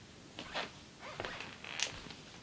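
Cloth rustling and rubbing close to the microphone in a few short scrapes, the sharpest just before the end.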